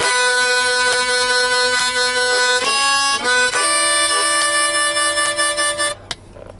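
Blues harmonica played in long held draw chords, with a big octave-spaced sound: one chord held for about two and a half seconds, a quick change of notes, then another long held chord that stops abruptly at the end. It is a demonstration of the big one-four draw sound.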